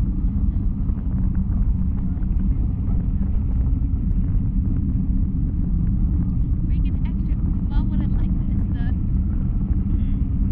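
Steady low wind rumble buffeting the microphone of a camera hanging in the open air under a parasail. A few brief, faint, high wavering sounds come in near the end.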